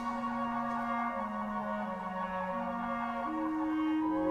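Clarinet playing a slow melody in its low register over a held orchestral chord, with no voice. The line steps down, then climbs, changing note about once a second.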